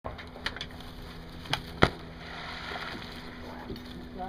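Shotgun shots at a Canada goose over a pond: a few sharp bangs, the loudest a little under two seconds in, with the shot goose splashing down on the water.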